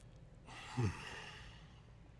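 A person sighing: a breathy exhale with a short voice tone that falls in pitch about a second in.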